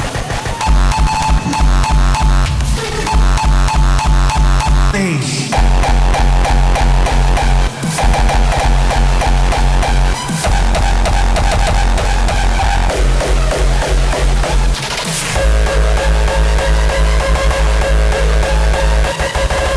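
Hardcore techno played loud from a DJ set: a fast, steady kick drum with synth lines above it. The beat drops out briefly a few times, and a falling synth sweep comes about five seconds in.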